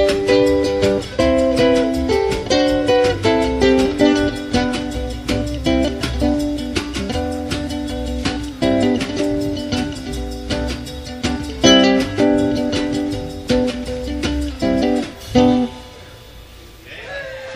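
Live jazz trio: an electric soprano ukulele picks the melody over a wash-tub bass and a drum kit. The tune closes with a final chord and drum hit near the end.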